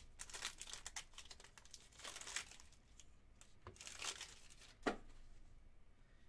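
Foil wrapper of a Panini Prime Racing hobby pack being torn open and crinkled in the hands, with a couple of sharp clicks about four and five seconds in.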